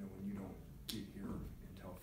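A man speaking into a microphone, with one sharp click about a second in.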